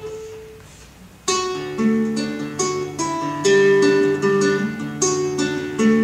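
Acoustic guitar played solo with picked notes: one note rings and fades, then a little over a second in a melody of single plucked notes over bass notes begins, the introduction to a song.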